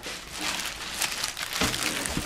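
Clear plastic bag wrapping rustling and crinkling as a boxed subwoofer is handled and lifted out.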